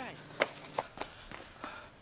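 A brief startled vocal sound right at the start, then several uneven footsteps on hard ground.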